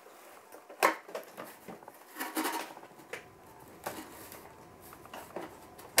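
Handling of a cardboard toy box and its packaging: scattered rustles and light knocks as the box is rummaged through, with one sharper knock about a second in that is the loudest.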